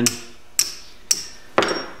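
Three sharp metallic clicks about half a second apart as a piece of iron is swiped quickly across the magnetic tip of a two-wire AC-pickup crank sensor.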